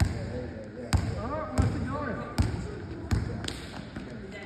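A basketball bouncing on a hard gym floor, about six separate bounces at an uneven pace, roughly one every half second to second.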